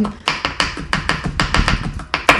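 Kitchen knife chopping red onion on a plastic cutting board: quick, irregular taps of the blade on the board, about five or six a second.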